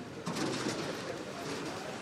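A bird calling faintly over steady background noise.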